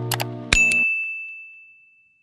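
Subscribe-button sound effect: two quick clicks, then a bright bell ding that rings on as one high tone and fades away. Under it, background guitar music cuts off just under a second in.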